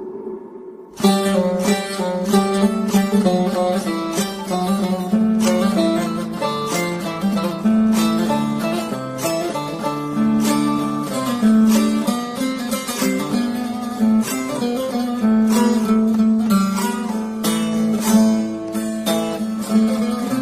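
Bağlama, the Turkish long-necked lute, playing an instrumental break between sung verses: a rapid run of plucked notes over a steady low sustained note, coming in about a second in after a brief lull.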